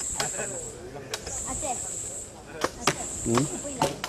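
Machetes chopping bamboo: about five sharp strikes at irregular intervals, with people talking in the background.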